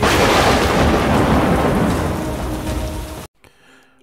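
A loud thunderclap with rain: it hits suddenly, fades over about three seconds, then cuts off abruptly.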